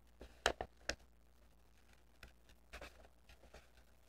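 Scissors snipping through a sheet of printer paper: a quick run of sharp cuts in the first second, then fainter, scattered snips later on.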